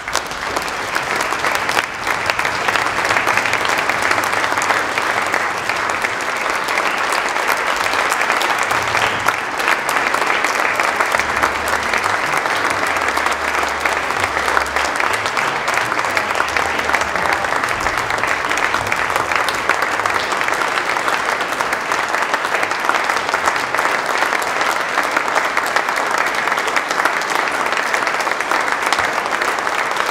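Audience applauding, a dense, steady clapping that holds at full strength throughout.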